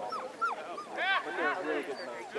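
A dog crying in short, high cries that rise and fall in pitch, several in quick succession, loudest about a second in.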